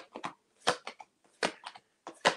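A deck of reading cards being handled and shuffled: about six short, sharp card snaps and taps at irregular intervals.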